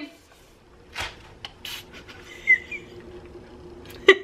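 Febreze ONE trigger sprayer misting twice: two short hissing sprays about a second in, the second a little louder.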